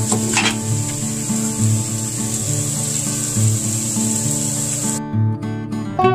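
Food frying in oil in a pan on the stove, a steady sizzle that cuts off suddenly about five seconds in, over background acoustic guitar music.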